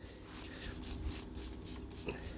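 Quick repeated squirts of a fine-mist trigger spray bottle, each a short hiss of spray, over a low rumble of wind on the microphone.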